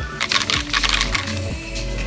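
Background music, with a quick run of sharp clicks during the first second.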